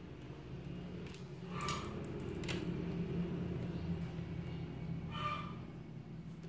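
Screwdriver turning a screw out of a plastic Brother TN2385 toner cartridge, with a couple of light clicks, over a low rumble that swells through the middle and eases near the end.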